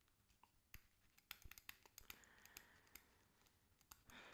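Near silence, with a scattering of faint, brief clicks through the middle of the pause.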